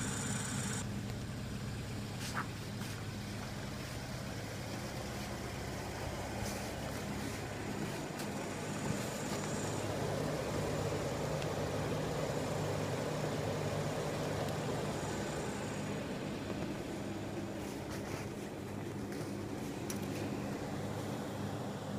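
Jeep Wrangler's engine idling with a steady low hum.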